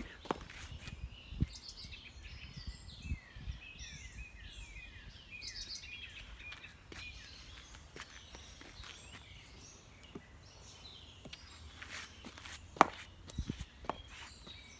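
A bird singing a run of repeated down-slurred notes, about two or three a second, for several seconds, over quiet outdoor background. A single sharp click sounds near the end.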